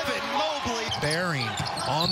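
Basketball game sound on a broadcast: a ball bouncing on a hardwood court under a commentator's voice.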